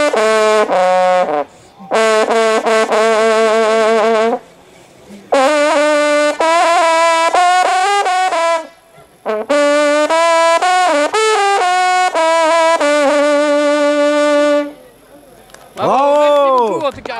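A French hunting horn (trompe de chasse) plays a fanfare: loud held notes with a rich brassy ring, in several phrases broken by short pauses. It stops shortly before the end.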